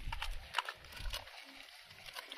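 A landed fish flapping on wet mud: a few short, scattered slaps and knocks, with a low wind rumble on the microphone.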